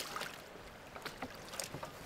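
Faint splashing and lapping of river water, with a few light splashes, as a submerged metal shopping trolley is dragged through the shallows beside a kayak.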